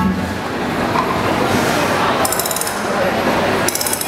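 Audience applauding at the end of a stage performance, with two short runs of rapid, high metallic clicking or jingling over it, one about two seconds in and one near the end.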